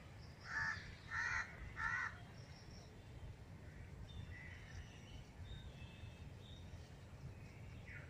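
A crow cawing three times in quick succession, starting about half a second in, followed by faint high chirps of small birds over a steady low background hum.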